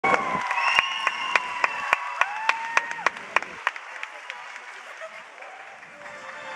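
Concert audience applauding, with one person's sharp claps close to the microphone at about three a second and voices calling over it. The applause dies away over the last few seconds.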